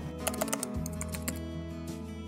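Background music with a quick run of computer-keyboard typing clicks in the first second or so: a typing sound effect.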